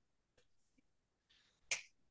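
Near silence, broken near the end by one short, sharp click.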